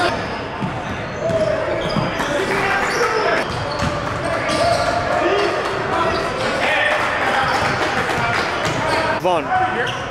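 Live basketball game in a large echoing gym: a ball bouncing on the court amid players' voices and shouts, with short impacts throughout and a few quick squeaks about nine seconds in.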